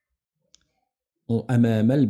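Near silence with a single faint click about half a second in, then a man's voice starts speaking about a second later.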